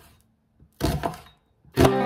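A knife cuts through an onion and knocks onto a plastic cutting board about a second in. Near the end, with a sharp knock, background music with a plucked guitar begins and carries on.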